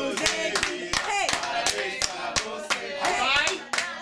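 A small group clapping hands in steady time, about three to four claps a second, keeping the beat of a birthday song, with voices over the clapping.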